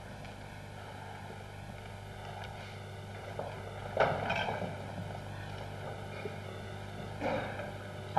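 Steady low rushing noise with a constant hum, broken by a short louder sound about four seconds in and a fainter one about seven seconds in.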